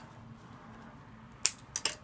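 Three sharp clicks in quick succession, about a second and a half in, as a florist works leaves and stems at the table, against a quiet room.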